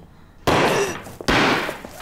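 Two handheld confetti cannons fired one after the other: two loud pops less than a second apart, each trailing off in a rush of noise.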